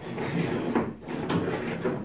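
Plastic track adapter sliding back and forth along a Lifetime Teton Angler 100 kayak's accessory track rail: a dry scraping with a few light clicks. It glides "smooth as butter" without snagging, now that the track's screws have been replaced.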